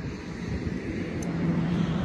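Low outdoor rumble of wind on the microphone and distant traffic, with a steady low hum joining in for the last half second or so.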